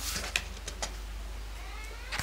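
Glossy photobook pages turned by hand: paper rustling with a few sharp flicks, the loudest about a third of a second in.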